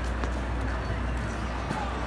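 Busy pedestrian street: voices of passers-by and footsteps on stone paving, over a steady low rumble.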